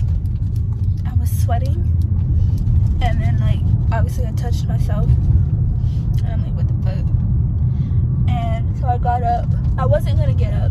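Steady low rumble of a car's engine and road noise, heard from inside the cabin while driving, with brief bits of quiet voice over it.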